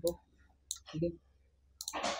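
A few sharp computer mouse clicks while text is being highlighted: one about two-thirds of a second in, then two in quick succession near the end.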